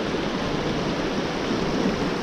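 Shallow river rapids at very low water rushing steadily around the kayak, heard from the boat itself.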